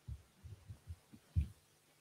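A series of faint, irregular low thumps, about six of them, the loudest about one and a half seconds in.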